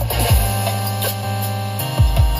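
Music playing through a car audio system, an AudioControl LC-6.1200 six-channel amplifier driving Infinity Kappa component speakers, heard inside the cab. A deep drum hit comes just after the start, then held chords over a steady bass note, changing near the end.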